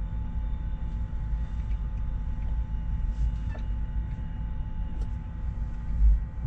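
Cummins ISX diesel of a Kenworth W900L idling, heard as a steady low rumble from inside the cab, with a faint steady hum above it.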